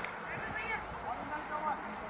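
Faint distant voices over a steady open-air background hiss, with no close sound standing out.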